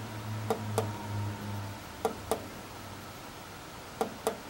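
Two double clicks, about a second and a half apart, from the control knob of a Hitbox Multimig 200 Syn MIG welder being pressed as the panel steps between saved weld settings.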